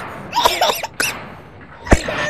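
Short, pitched shouts and cries from men, with a click about a second in, then a single sharp, loud thud just before the end.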